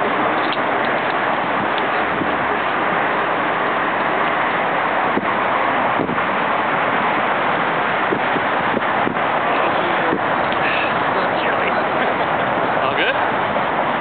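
Steady rushing wind noise on the microphone, with a few faint clicks as rope-access hardware (descender and carabiner) is handled.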